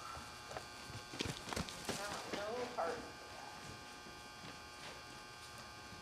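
Faint hoofbeats of a horse trotting on soft arena dirt, a few strikes about a second in, with a brief faint voice and a steady low hum underneath.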